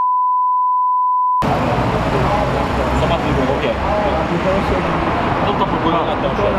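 A steady single-pitch censor bleep blanks out a spoken full name and cuts off about a second and a half in. Men's voices follow over street traffic noise.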